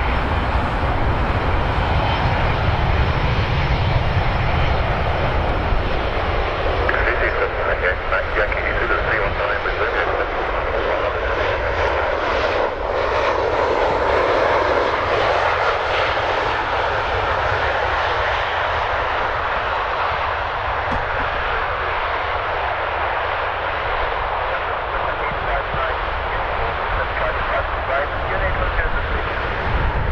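Boeing 747-200 freighter's four Rolls-Royce RB211 turbofans running steadily at taxi power as the aircraft rolls past, a continuous jet noise with a low rumble that swells a little about midway.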